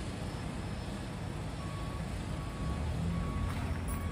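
Building-site noise: a steady low machinery rumble, with a vehicle's reversing alarm beeping at an even pace, about one beep every three-quarters of a second, from about one and a half seconds in.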